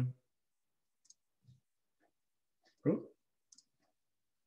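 Mostly quiet, with a few faint, scattered computer mouse clicks.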